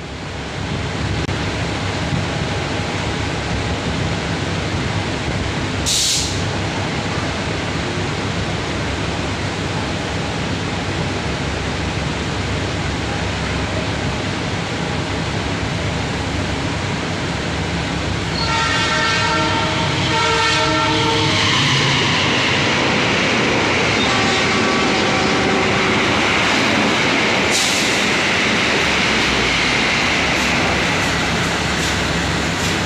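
KRD MCW 302 diesel railcar's Cummins NT855-5R engine running steadily close by. A train horn sounds several tones at once for about three seconds a little past the middle, then again more faintly a few seconds later. There are two short high hisses, one early and one near the end.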